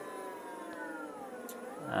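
Brushless motor driven by a hobby ESC, running with a whine made of several pitches together. The whine sinks slowly in pitch, then rises again in the second half as the motor's speed is changed.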